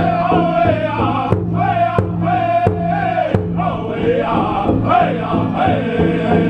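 Powwow drum group singing a Fancy dance song, the men's voices high, over a steady, fast beat on a big powwow drum.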